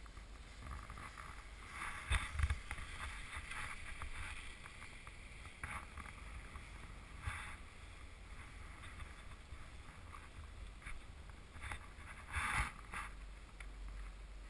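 Riding a chairlift: a steady low wind rumble on the camera's microphone, with a clattering rumble of the chair running over the lift tower's sheave wheels about two seconds in. Several shorter rustles and knocks follow, the loudest near the end.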